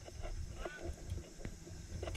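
Low rumbling noise on an action camera's microphone, with a few faint light knocks around the middle and a brief faint vocal sound under a second in.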